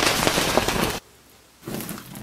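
Dense crackling and fizzing of something burning and throwing sparks, cutting off abruptly about a second in. A brief, fainter sound follows near the end.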